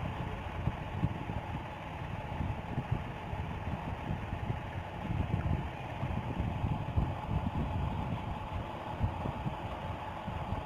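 Background noise with no speech: a steady, uneven low rumble with hiss and a faint steady hum.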